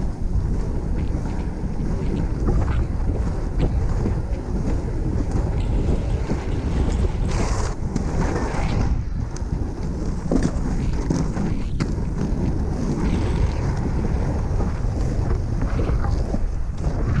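Wind buffeting the microphone of a handheld pole camera while skating, over the rumble of large inline skate wheels rolling on tarmac, with scattered small clicks. A brief louder hiss comes about halfway through.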